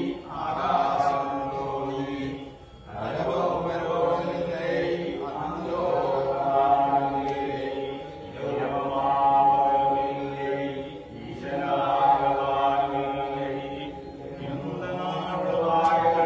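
A group of men and boys singing a Poorakkali song together in unison, in phrases a few seconds long with short breaks between them.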